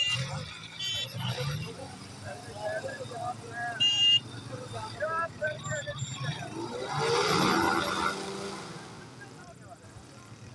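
Ultralight trike's engine and pusher propeller running, then surging loudly about seven seconds in as it throttles up to taxi off, and fading as it rolls away. People talking over it.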